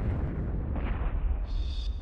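Explosion sound effect for a missile warhead detonating: a sustained deep rumble with a rough, noisy roar above it, heaviest in the bass.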